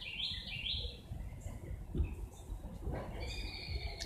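A bird chirping outdoors: a short run of three quick, evenly spaced notes in the first second, then another call about three seconds in, over low background noise.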